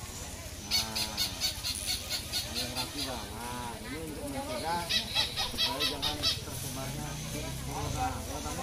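Poultry calling in three quick runs of rapid repeated notes, about six a second, over background voices.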